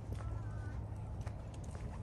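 Footsteps of a person walking on a paved path, soft irregular treads over a low steady outdoor rumble, with a brief high-pitched call about a quarter-second in.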